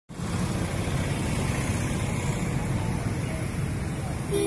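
Steady road traffic noise: a continuous low rumble of passing and idling motor vehicles.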